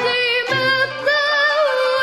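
A young girl singing in Arabic tarab style, holding a long note with wavering, ornamented turns in pitch.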